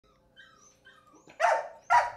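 Dogs in shelter pens: faint high whining, then two loud barks about half a second apart near the end.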